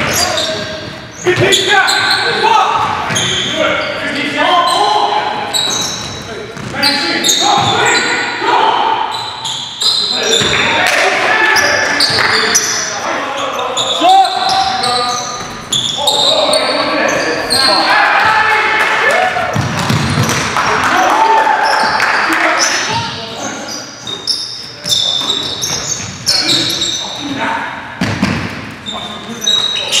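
Live game sound of indoor basketball: the ball bouncing on a hardwood gym floor amid players' shouts and calls, echoing in a large gym.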